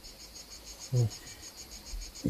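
A cricket chirping steadily in the background: a high, even pulsing of about ten pulses a second. A short voiced sound from the speaker comes about a second in.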